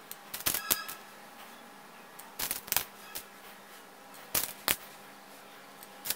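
LED legs being pushed through the holes of a perfboard (dot PCB): small sharp clicks and taps in pairs, three times, about two seconds apart.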